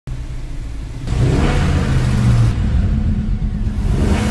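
Intro sound effect of a car engine revving, a low rumble that swells and gets louder about a second in.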